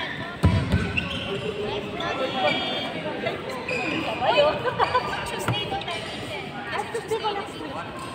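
Sounds of badminton play on an indoor court: a heavy thump about half a second in and scattered knocks on the court floor, with players' voices carrying through the hall.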